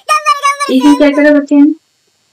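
A high-pitched, wavering voice, joined by a lower held note about two-thirds of a second in; it stops abruptly shortly before the end.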